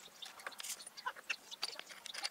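Crows cawing in the background, scolding a person standing next to their freshly filled feeder, with light clicks and knocks scattered through.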